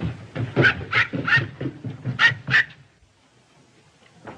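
A small dog yapping: a quick run of about seven short, sharp barks that stops about three quarters of the way through.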